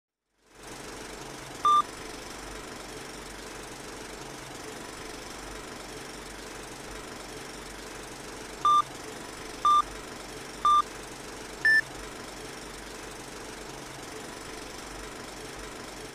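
Old-film countdown leader sound effect: a steady hiss of worn film noise with short beeps, one near the start, then three evenly a second apart and a fourth, higher-pitched beep right after them.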